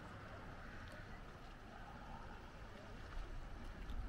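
Faint, steady outdoor rushing noise with a low rumble, an open-air coastal ambience.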